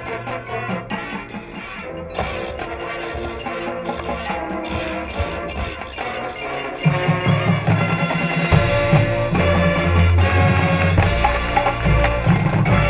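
High school marching band and front ensemble playing a competition field show. The music is softer at first, then gets louder about seven seconds in as a deep low end comes in.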